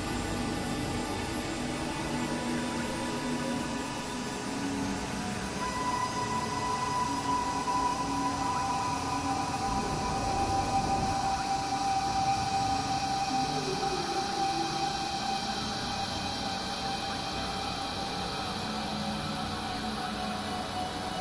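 Experimental synthesizer drone: several steady held tones over a constant noisy wash. A higher tone swells in about six seconds in and fades by the middle, while the overall sound gets slightly louder around the middle.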